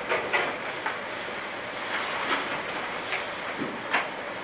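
Steady room hiss in a meeting room, with a handful of light clicks and rustles scattered through it, from people handling papers and things on the tables.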